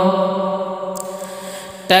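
A man's voice singing a nazm, holding the last note of a line steady while it fades away; a new sung phrase begins near the end.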